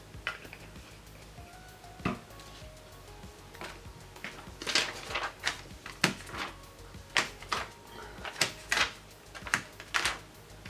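Paper rustling and crackling in sharp spurts as a torn book page is handled and pressed flat by hand, starting about three and a half seconds in, after a single sharp click about two seconds in. Faint background music runs underneath.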